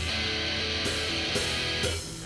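Instrumental passage of a rock song: guitar holding sustained chords with a steady bright wash over them and no drum hits, between sung lines.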